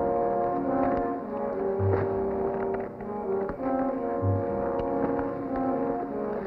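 Orchestral background score with sustained brass chords and a low note pulsing about every two and a half seconds.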